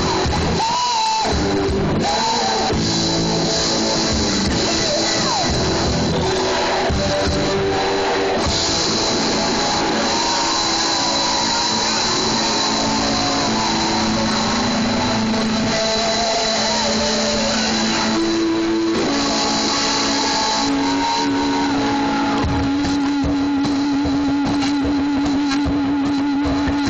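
Live rock band playing loud, with electric guitars and drums. In the last few seconds a long held note wavers in pitch over the band.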